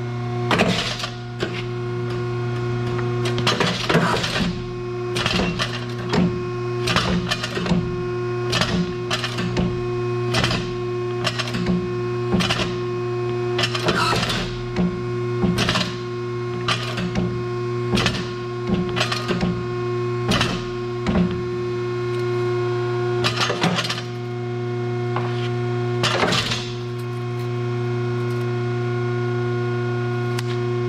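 VicRoc UB-302 hydraulic U-bolt bender running with a steady hum from its pump motor. Through the middle, a regular train of sharp clicks comes about one and a half a second, and a few louder knocks follow near the end.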